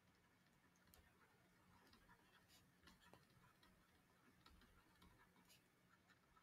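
Near silence with a few faint, scattered ticks from a stylus tapping a tablet screen while words are handwritten.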